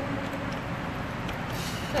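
Steady background noise, a low rumble and hiss, with faint rustling near the end.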